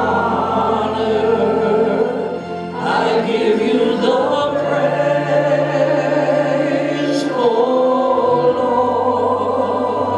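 Worship song sung by a small group of voices in unison and harmony over keyboard accompaniment, with long held notes and sustained bass chords that change every few seconds.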